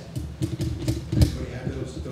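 Handling noise from the video camera being swung round in a pan: a run of low bumps and creaks, with the loudest thump a little past halfway.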